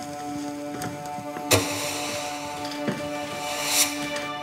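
Background score of steady held tones, with a sharp knock about a second and a half in, a fainter one near three seconds, and a short rising swell of noise just before the end.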